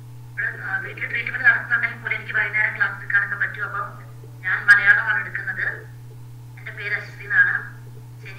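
A person speaking over a video call, the voice thin and phone-like, in three stretches with short pauses, over a steady low electrical hum.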